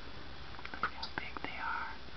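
A few short clicks and high squeaks from northern cardinals at the nest (the nestlings and the adult male beside them), with a slightly longer squeak near the end.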